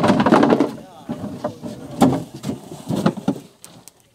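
A voice talking in short, broken phrases, with a few sharp knocks in between.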